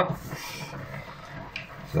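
Paper flour bag rustling as it is handled and tipped to pour flour, with a brief crinkle about half a second in and a couple of faint taps near the end.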